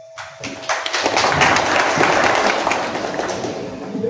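Audience applauding: a dense patter of many hands clapping that starts abruptly, swells and then tapers off near the end.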